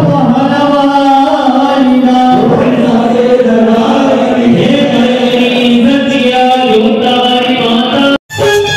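Hindu devotional chanting sung in long, drawn-out held notes, the kind sung during an aarti.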